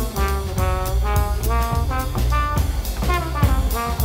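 Live jazz from a low-register band: trombone, baritone saxophone and bass clarinet play a run of short notes over drum and cymbal strokes and a strong low bass line.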